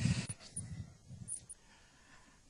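A man laughing under his breath close to a headset microphone in the first second or so, then only faint room sound.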